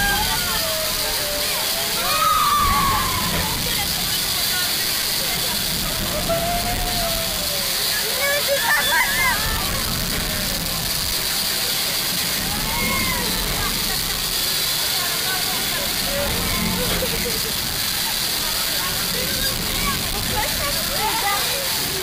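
A small children's roller coaster in motion: a steady rushing noise from the running train, with riders' voices calling out now and then, loudest about two seconds in and again around eight to nine seconds.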